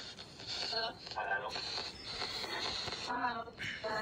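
Faint, brief snatches of low voices over a hiss that cuts in and out.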